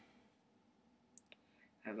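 Near silence, room tone, broken by two faint short clicks a little over a second in; speech starts right at the end.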